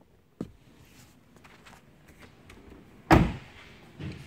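A pickup truck's rear door: a sharp click about half a second in, then the door shut with a loud thump about three seconds in.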